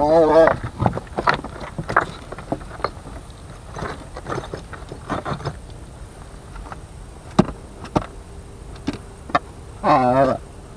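Scattered sharp clicks and knocks of footsteps and handling on loose stone rubble and a cardboard box. A short wavering voiced call comes at the start and again at the end.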